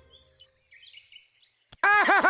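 Faint bird chirps over a near-silent cartoon forest background. Near the end a click is followed by a loud voice that warbles up and down about four times a second.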